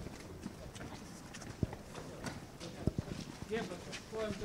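Hurried footsteps of several people on pavement, an irregular run of sharp knocks, with indistinct voices underneath.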